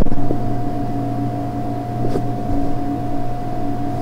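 Steady hum with a constant mid-pitched tone over it, and a couple of faint clicks.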